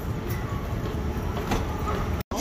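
Moving walkway running: a steady low mechanical rumble from its tread, with a faint rolling clatter.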